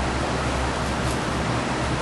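Steady hiss with a low hum beneath it: constant background noise of the room or recording.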